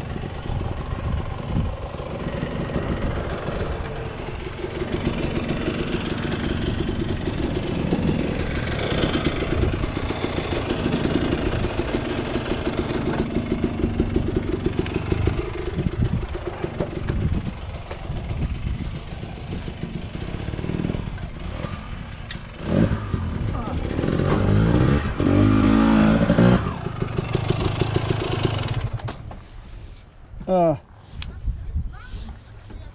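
Dirt bike engine running at idle, with a few revs partway through. It falls away near the end.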